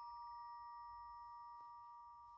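The lingering ring of a two-tone ding-dong doorbell chime, its two notes held and slowly fading.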